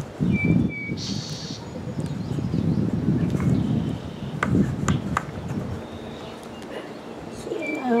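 Hands pressing and firming loose potting soil around a transplanted pepper plant in a plastic bucket: a low, crumbly rustling with a few sharp clicks. A bird chirps briefly near the start.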